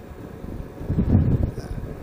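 Motorcycle wind and engine noise while riding, picked up by a helmet-mounted Bluetooth headset microphone: a steady low rumble that swells briefly about a second in.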